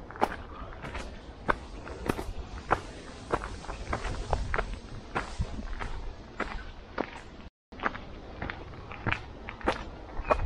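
Footsteps walking at a steady pace on a gravel path scattered with dry leaves, about two crunching steps a second. The sound cuts out completely for a moment a little past halfway.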